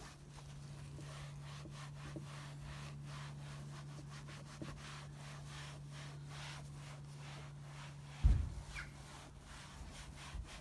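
Foam sponge soaked in linseed oil rubbing along black plastic bumper trim in quick, repeated swishing strokes, over a steady low hum. A single low thump about eight seconds in.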